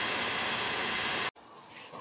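Heat gun blowing steadily while a PVC pipe is heated to soften it, a constant rushing noise that cuts off suddenly about a second and a half in, leaving faint room noise.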